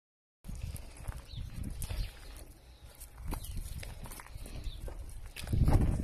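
Footsteps on a gravel-strewn path, with scattered small clicks and an uneven low rumbling that grows louder near the end.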